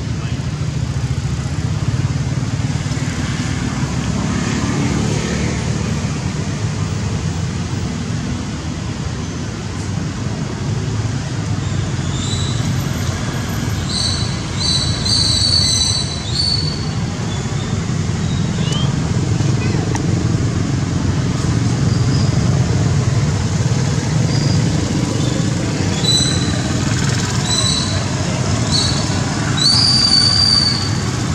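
Newborn long-tailed macaque giving short, high-pitched squealing cries, in bursts about halfway through and again near the end, over a steady low rumble of background noise.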